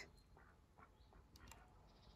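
Near silence, with a few faint, short duck calls.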